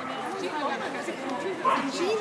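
Indistinct chatter of several people's voices, with a brief louder burst near the end.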